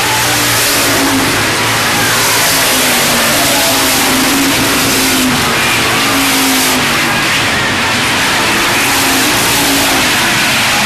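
Pack of hobby stock race cars running at speed on a dirt oval, several V8-type engines revving and easing off through the turns so their pitches rise and fall over one another.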